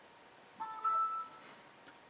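Windows 7 startup chime through the HP ProBook 6460b laptop's small built-in speakers: a short run of bright, bell-like tones lasting about a second, starting about half a second in. It signals that the freshly installed system has finished loading the desktop.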